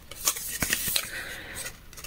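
Paper and card of a handmade scrapbook booklet rustling and rubbing faintly as its pages are handled and turned, with a few soft taps in the first second.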